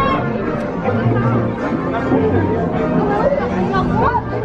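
Chatter of several people talking at once, with music playing underneath.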